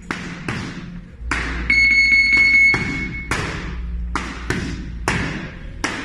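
Boxing gloves striking focus mitts in a series of about nine sharp punches, some in quick pairs. A steady high electronic beep sounds for about a second and a half about two seconds in.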